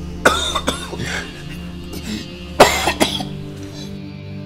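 A person coughing in two fits, the first about a quarter-second in and the second, louder one about two and a half seconds in, over steady background music.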